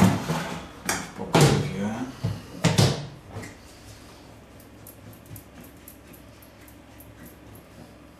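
A plastic fermenting bucket and its lid being handled after rinsing: four or five knocks and scrapes in the first three seconds, then a run of faint light clicks.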